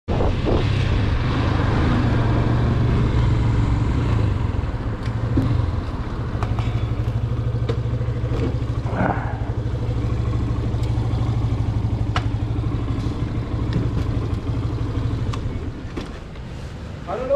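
Motorcycle engine running as the bike rides in, then settling to a steady idle about five seconds in, with a few light clicks and knocks.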